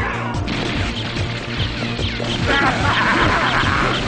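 Anime soundtrack of background music mixed with repeated crash and hit sound effects, with no dialogue.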